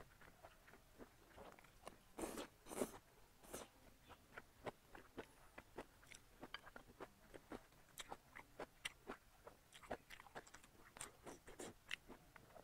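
A person chewing food close to a clip-on microphone: a steady run of small wet mouth clicks and crunches, with a few louder bites about two to three seconds in.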